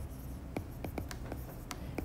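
Stylus tip tapping and sliding on a tablet's glass screen while handwriting: a quick, irregular run of light ticks.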